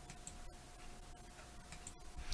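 Quiet room tone with a faint steady hum and a few faint ticks.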